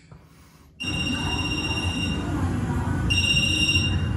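Mobile phone ringtone for an incoming call: a high electronic ring that starts after a brief near-silence, sounds for about a second and a half, pauses for about a second, then rings again, over low background noise.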